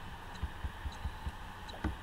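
Soft, short low taps of a stylus writing on a pen tablet, a few a second, over a steady electrical hum.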